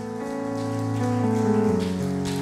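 Live worship band music swelling in: sustained keyboard chords held and changing, with a high cymbal-like wash over them.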